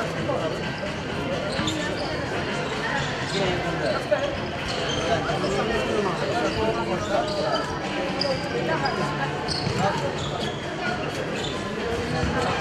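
Chatter of many voices, with scattered thuds of a ball being bounced.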